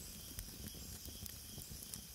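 Faint steady hiss with scattered soft crackles and clicks.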